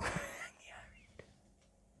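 A woman's short breathy whisper that trails off within the first half second, then near silence with one faint click.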